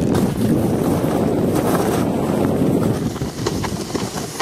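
Snowboard base and edges sliding over packed snow: a steady, low rushing, with wind buffeting the microphone as it moves along.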